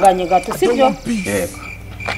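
A woman's voice speaking in short phrases through about the first second, then dropping away.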